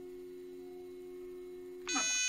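iOptron CEM60 equatorial mount slewing its declination axis at speed five: a steady whine in two low tones from the motor drive, running smoothly with the clutch set a quarter turn toward disengaged. Near the end the whine drops in pitch and stops, and a short electronic beep follows at once.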